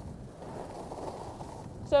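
Steady low rushing noise of skiing down a groomed run: wind on the microphone and skis sliding over packed snow.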